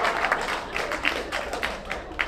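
Audience applause, many hands clapping, thinning and growing fainter toward the end.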